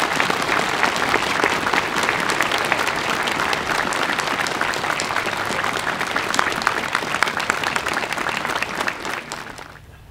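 A large crowd applauding, a sustained round of clapping that dies away near the end.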